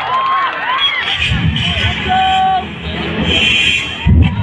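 Crowd cheering and shouting, many voices calling out at once, with one long held call a little after two seconds in.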